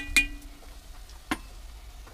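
A wooden spoon knocking against an enamelled Dutch oven while stirring onions: two sharp, briefly ringing clinks at the start and another a little over a second in.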